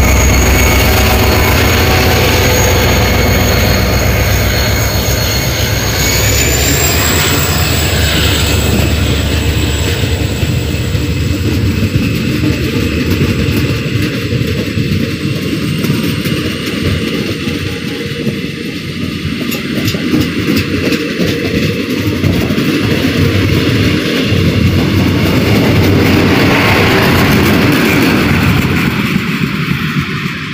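A Korail diesel locomotive pulling a Saemaeul passenger train away from the station and passing close by: heavy engine rumble with a high whine that steps up in pitch about six seconds in as it gathers speed. The passenger coaches then roll past with a rush of wheel noise and fine clicking of wheels on the rails, the sound swelling again near the end.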